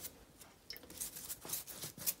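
Pastry brush stroking water onto the crust of a freshly baked wheat bran loaf: a few faint, short, scratchy brush strokes.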